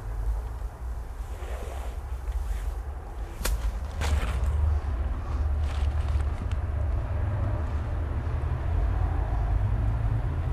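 Low, steady rumble of wind on the microphone outdoors, with one sharp click about three and a half seconds in and a few fainter handling noises just after.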